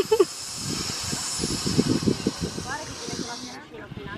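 Steady hiss of air rushing through the valve of an inflatable swim ring as it is blown up, stopping about three and a half seconds in.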